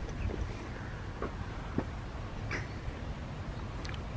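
A few short, faint bird calls, spaced about a second apart, over a steady low rumble of wind and microphone handling.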